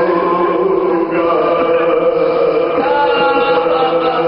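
A man's voice singing a marsiya, a Shia elegy, in slow chanted style, drawing out long held notes that waver at first and then hold steady.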